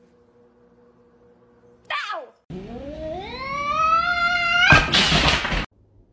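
A domestic cat meowing: first a short meow falling in pitch, then a long yowl that rises steadily in pitch, ending in a loud harsh burst of noise about a second long that cuts off suddenly.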